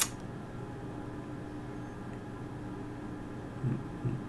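A single sharp click right at the start, then a steady low hum with a faint constant pitch: background room tone.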